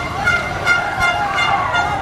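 A horn tooting in short repeated blasts, about two or three a second, over outdoor crowd and street noise.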